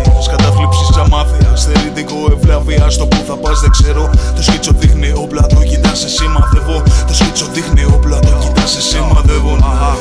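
Hip-hop music: a beat with heavy bass and drum hits under held synth tones, with rapped vocals in the mix.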